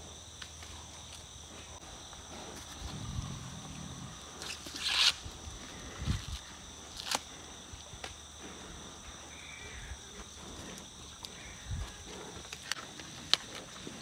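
Ears of sweet corn being husked, with a tearing rustle of husks and scattered sharp snaps as the underfilled ends are broken off. Pigs give a few low grunts as they root for the scraps, over a steady high insect drone.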